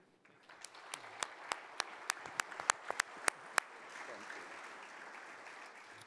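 Audience applauding, with one person's sharp, close claps standing out at about three a second for the first few seconds. The applause dies down near the end.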